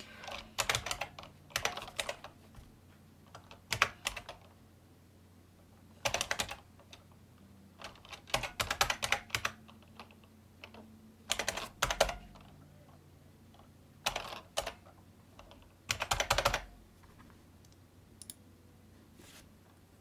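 Computer keyboard typing in short bursts of keystrokes with pauses of a second or two between them, as a product key is entered.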